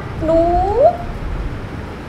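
A woman's storytelling voice speaking as the cat, drawing out one word, 'nuu' ('mice'), with a long rising pitch, over a steady low background rumble.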